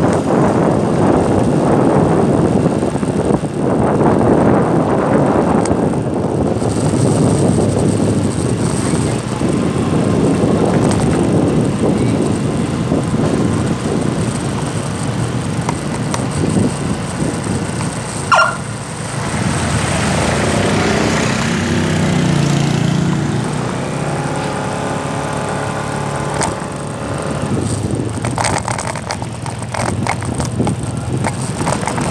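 Riding on a motorcycle: wind buffeting the microphone and road rush for the first half, then a short sharp squeal a little past halfway. After it the motorcycle's engine hum comes through more clearly, shifting in pitch and then holding steady.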